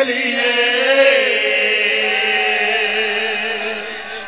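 A man's voice chanting one long held note of a devotional qasida line into a microphone. The pitch swells slightly about a second in, and the note slowly fades toward the end.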